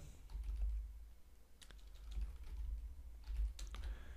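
Computer keyboard typing: a few separate, faint keystrokes spread out unevenly as a short word is typed.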